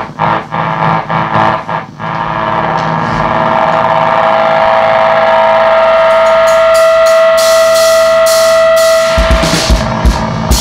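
Live punk rock band: a few short drum and guitar stabs, then from about two seconds in a long held electric guitar note rings out and grows louder. Repeated cymbal crashes join it, and heavy drum hits come in near the end.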